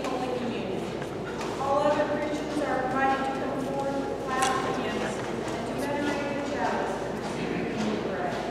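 A woman's voice reading aloud.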